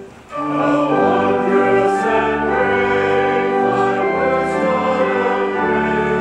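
Choir singing a hymn with pipe organ accompaniment, the hymn sung between the Epistle and the Gospel. A held organ chord of the introduction cuts off at the start, and after a brief gap of about half a second the voices and organ come in together and carry on steadily.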